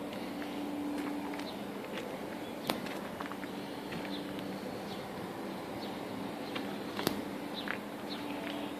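Footsteps on gravel, with scattered bird chirps and a steady low hum behind them. Two sharp clicks stand out, one about a third of the way in and a louder one near the end.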